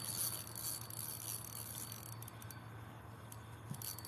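Spinning rod and reel working a hooked bullhead: faint, irregular clicks and handling noise from the reel over a low hiss, the clicks thickening about halfway through.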